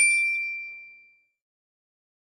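A single bright bell-like ding, struck once and ringing out, fading away within about a second, then silence.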